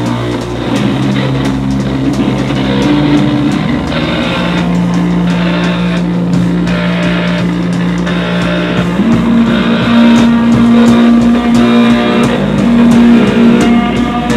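Live noise-rock improvisation at full volume: electric guitar run through floor effects pedals sustaining a harsh, droning tone that steps up in pitch about halfway through and again later, over a thick wash of distortion and steady drum and cymbal hits.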